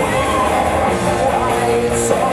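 Live rock band playing, with a woman singing lead vocals into a microphone over guitar and drums.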